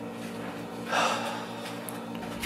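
A sharp gasp, one quick intake of breath about a second in, over a steady low hum.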